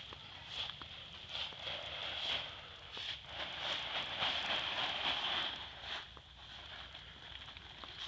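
Nylon tent fabric rustling as a dome tent is taken down, in uneven surges that are strongest in the middle, with a few light clicks.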